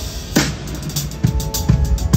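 DS Drum maple-walnut drum kit played in a band groove: kick drum beats under a cymbal crash about half a second in, with other instruments holding notes underneath.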